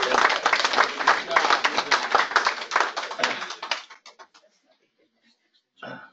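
Room of people applauding, dense clapping that dies away about four seconds in.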